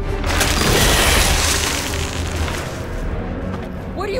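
A loud boom, a rush of noise that swells just after the start and fades away over about two seconds, over a low film score.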